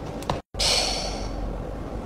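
A woman's long, worried sigh, breathed out through pursed lips. It starts about half a second in, after a brief dropout, and fades over the next second. Before it, a pen scratches faintly on paper.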